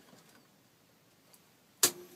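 Near silence, then near the end a single sharp click as the house's mains power is switched off, followed by a faint steady hum.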